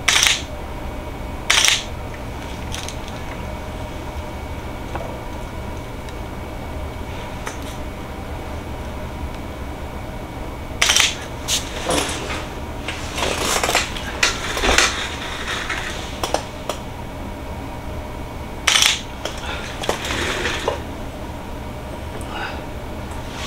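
Scattered sharp clicks and small clinks from handling a camera and small props, in short bursts near the start, around the middle and near the end, over a steady low hum.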